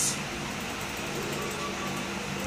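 Steady low background noise with a faint hum.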